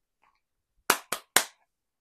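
Three sharp hand claps in quick succession, about a quarter of a second apart, a little before the middle.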